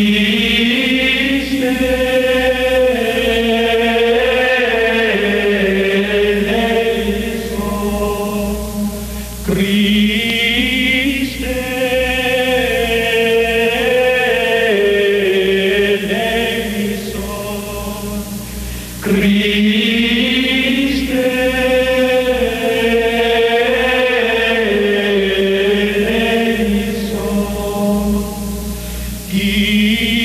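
Slow chanted vocal music, with long sustained notes that move gently in pitch. Each phrase restarts about every nine to ten seconds, over a low steady hum.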